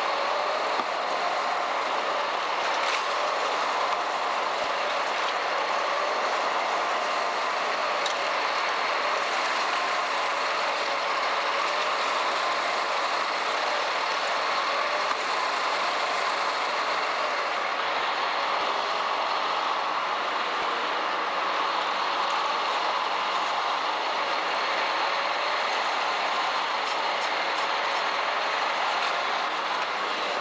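High-pressure spray wand blasting a rough pool plaster surface: a steady, unbroken rushing noise.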